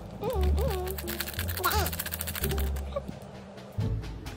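Background music with a steady bass line. Over it, a plastic sachet crinkles in quick fine clicks for about a second as it is squeezed and emptied into a noodle cup.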